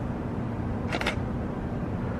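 A camera shutter clicks once, a quick double click, about a second in, over a steady low hum.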